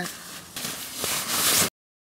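A fabric stuff sack rustling as it is handled, growing louder, then cutting off suddenly into silence near the end.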